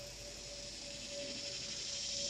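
Faint, steady high-pitched insect drone with one steady tone underneath, growing slightly louder toward the end.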